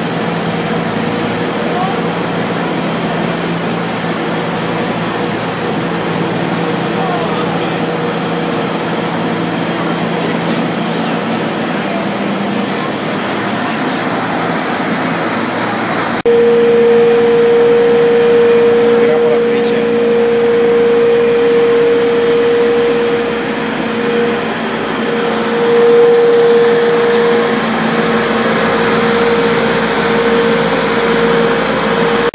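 Olive oil mill machinery running: a steady electric-motor hum with a whine. About halfway through it jumps to a louder hum with a stronger steady tone.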